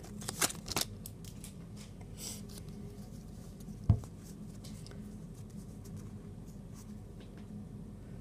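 Quiet handling of a stack of Magic: The Gathering cards and their foil booster wrapper: a few crinkles and clicks in the first second, then faint card rustles, with a single sharp knock about four seconds in. A steady low hum runs underneath.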